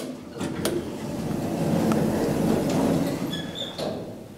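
Elevator door mechanism: sharp clicks as the call button is pressed and the door releases, then the car door sliding open with a rumble that swells for about two seconds, ending with a brief high squeak and a click.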